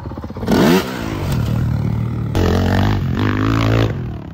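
Dirt bike engine revving hard, with a quick rising rev about half a second in, then held at high revs for over a second near the end as the bike launches off a jump.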